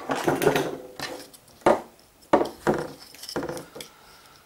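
Handling noise of a small dimmer circuit board and its black plastic housing: a run of sharp knocks and clatters, about five, with rubbing between them. The sharpest knock comes a little under two seconds in.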